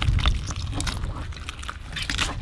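Wet tearing and squelching as a snapper's gills and guts are pulled out by hand, a scatter of small crackles over a steady low rumble.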